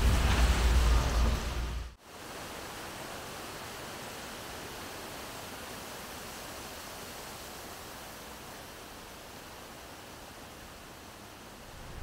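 A loud low rumble with wind-like noise for about two seconds, cutting off suddenly. It is followed by a steady, even hiss of forest ambience, much quieter.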